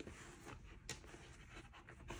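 Faint handling rustles of a thick softcover B6 notebook sliding into a soft, worn leather folio cover, with one light tick about a second in.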